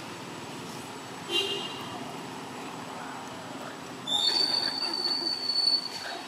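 A baby long-tailed macaque gives a short high squeak, then about four seconds in a long, high-pitched squeal held for nearly two seconds.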